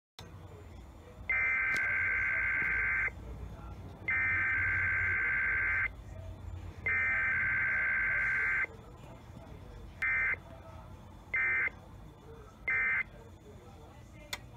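Emergency Alert System SAME digital data bursts from a Sage EAS ENDEC relay. Three buzzy header bursts of about two seconds each are followed, about ten seconds in, by three short end-of-message bursts about a second apart, over a low hum.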